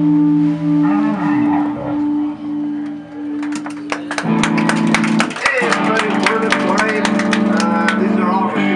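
Amplified electric guitar holding steady notes, then from about three and a half seconds in playing quick, rapidly repeated strummed chords.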